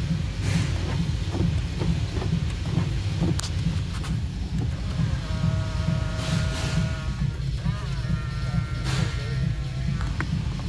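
Electric door mirror motor whining as the mirror glass is adjusted, in two runs of about two seconds and a second and a half, over a steady low rumble.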